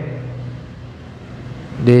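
A short pause in a man's speech through a microphone and sound system, with only a faint low hum of the room, then near the end his voice begins one long, drawn-out syllable.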